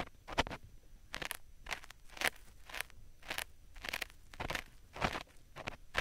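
Ear pick scraping in the silicone ear of a 3Dio binaural microphone: short, scratchy crunching strokes at an irregular pace of about two a second.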